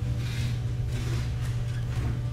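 A steady low electrical hum, with only faint handling sounds from fingers sliding a crimp tube along beading wire.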